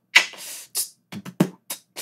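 A light, laid-back trap beat: a few sharp drum-machine hits with short gaps between them.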